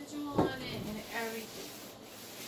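A person sitting down in a chair at a table: a single thump about half a second in, followed by short creaking sounds.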